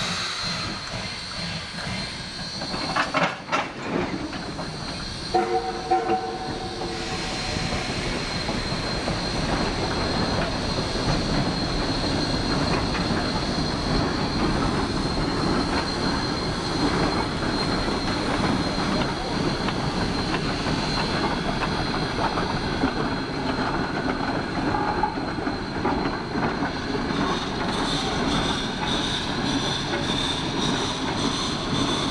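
A log train pulled by geared steam locomotives rolls past close by, with a steady clatter of the log cars' wheels on the rails. A few sharp clanks come about three seconds in, and a steam whistle sounds one steady note for about two seconds just after five seconds in. The rolling noise then grows louder and stays steady as the cars and locomotive pass.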